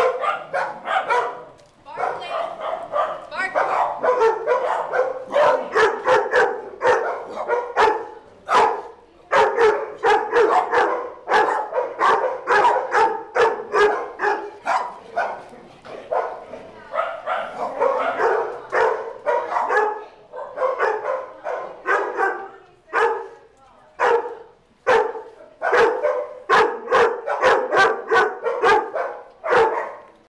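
Several dogs barking and yipping in rapid, almost unbroken volleys as they play and chase, with only brief lulls.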